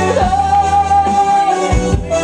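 Live Spanish-language romantic ballad: a male singer with instrumental backing, played loud, with one long note held steadily for over a second.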